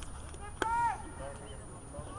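A soccer ball struck once, a sharp knock about half a second in, with a short high-pitched shout from a player at the same moment that drops in pitch at its end. Faint voices from the pitch and sideline continue underneath.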